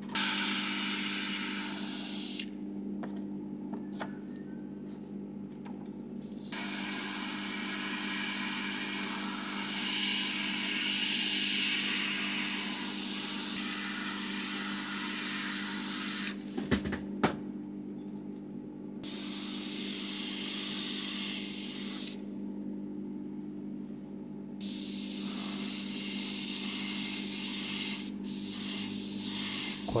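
GAAHLERI Swallowtail trigger-type airbrush, fitted with a fan-pattern air cap and a 0.5 mm nozzle, spraying black paint in four bursts of hiss: a short one, a long one of about ten seconds, then two shorter ones, with pauses and a few light clicks between them. The air compressor hums steadily underneath.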